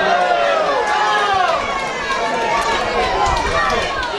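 Several players' voices shouting and calling to each other across the pitch during play, overlapping, with long rising and falling calls.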